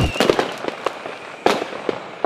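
A run of irregular sharp pops and crackles over a noisy hiss, with one loud crack about one and a half seconds in.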